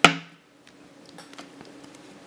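A single sharp tap at the very start, then quiet handling of a stack of Pokémon trading cards with a few faint clicks as they are shuffled in the hands.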